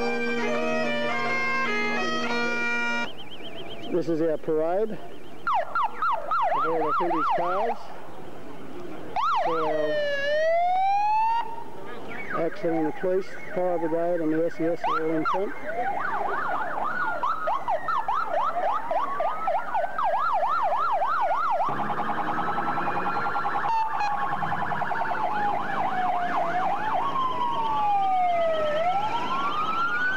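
Bagpipes playing a steady chord over their drones for about three seconds, then breaking off. Then several emergency-vehicle sirens sound at once, alternating fast yelps with long rising and falling wails, among them a fire engine's.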